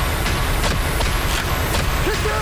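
Loud, steady rumbling noise with a few sharp hits, part of a promo trailer's sound-effects mix.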